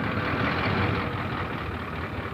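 Truck engine running steadily: a low hum under an even wash of noise, easing off a little near the end.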